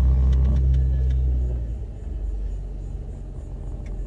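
Low engine and road rumble heard inside the cabin of a Chevrolet Trailblazer. It is heavy for the first two seconds, then drops off to a softer drone.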